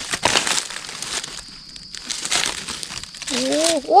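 Dry fallen leaves crackling and rustling in irregular bursts as a hand pushes through leaf litter and undergrowth. A voice breaks in near the end.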